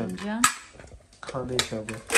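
Kitchenware clinking, with one sharp clink about half a second in, amid brief bits of voice.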